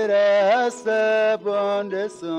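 Background music: a voice singing held notes that slide up and down between phrases.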